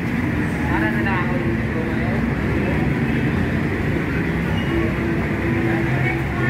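Busy street ambience: a steady rumble of road traffic mixed with people's chatter nearby.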